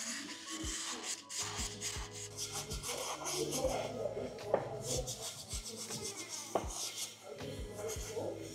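Hand-sanding of unglazed clay pieces: abrasive rasping over the clay surface in quick repeated strokes, with a few soft knocks as the pieces are handled.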